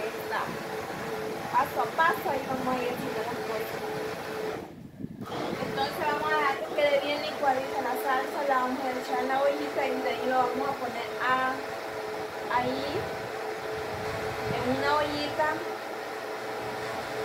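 Electric countertop blender running steadily, blending a salsa of tomato, onion and jalapeño. The sound cuts out briefly about five seconds in, then carries on.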